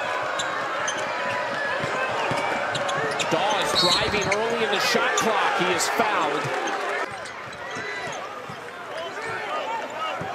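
Basketball game sound in an arena: sneakers squeaking on the hardwood, the ball bouncing, and a noisy crowd. The crowd gets louder midway, with a short referee's whistle about four seconds in. The sound drops suddenly about seven seconds in.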